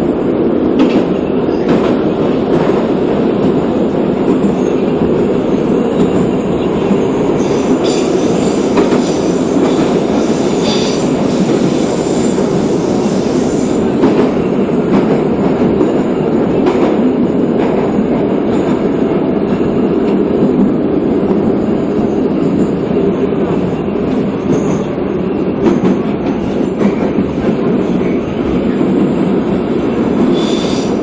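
A Moscow Metro train running through a tunnel, heard from inside the car. A loud, steady rumble is broken by scattered clacks of the wheels over rail joints, and a high wheel squeal rises for about six seconds, a quarter of the way in.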